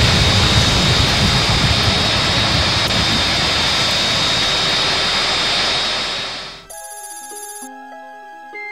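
X-wing starfighter engine sound effect: a steady rushing noise with a thin high whine, fading out toward the end. It is followed by a brief electronic buzzing trill and the start of synth music.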